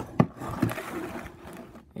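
Cardboard display box being handled and set on a table: a sharp knock shortly after the start, then about a second of rustling and scraping.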